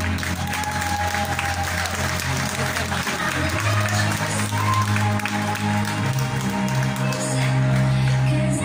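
Audience applauding over slow electronic music with long held bass notes.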